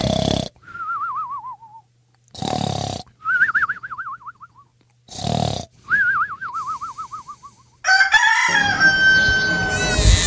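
Comic snoring sound effect, three times: a rasping snore on each in-breath followed by a warbling whistle falling in pitch on the out-breath. Near the end a rooster crows.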